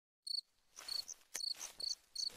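Crickets chirping: short, high, evenly repeated chirps about three a second, starting a quarter second in after a brief silence, faint against a light background hiss.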